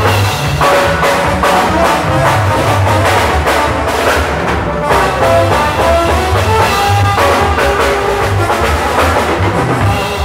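Mexican brass band (banda) music playing loudly: horns over drums and a steady, pulsing bass beat.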